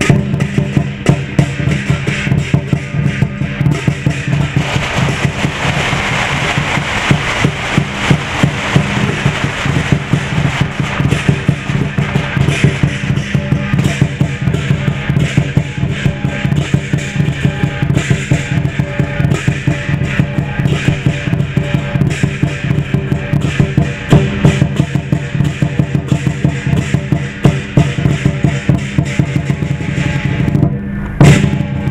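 Lion dance percussion: a large Chinese drum beaten in fast, steady strokes, with cymbals clashing and ringing over it, playing without a break.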